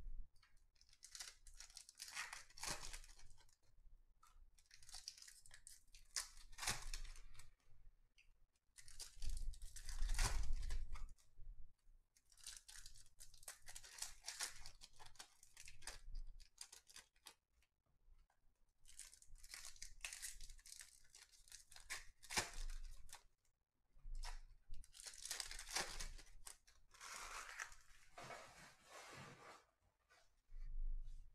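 2021 Topps Series 1 baseball hobby card packs being torn open one after another: the wrappers tear and crinkle in a run of bursts a few seconds long, with short pauses between them.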